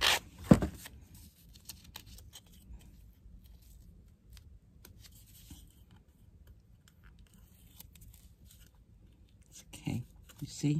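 A last stroke of a hand sanding block across a small wooden piece, then a sharp low thump about half a second in. After that there are faint scattered clicks and rustles as small wooden pieces are handled.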